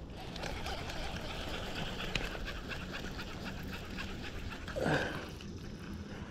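Baitcasting reel being cranked to wind in line on a hooked fish, a steady soft whirr with fine clicking. A brief louder sound comes about five seconds in.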